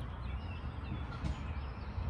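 Faint bird chirps over a steady low background rumble.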